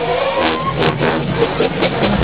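College marching band playing: brass notes over struck drums.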